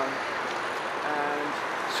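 Road traffic as a steady background hum by a street, with a man's short held 'uh' about a second in.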